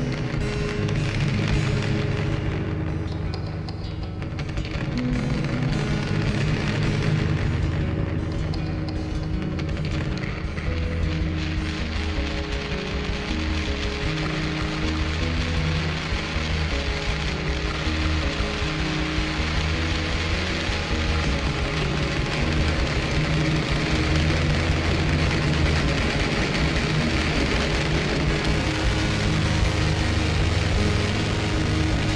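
Fuzzrocious Empty Glass Drum Mod pedal: hands tapping and rubbing on its metal enclosure, picked up by the piezo contact mic inside and pushed through its harsh octave-up distortion and reverb. The result is a continuous noisy wash over a low droning tone that shifts pitch now and then.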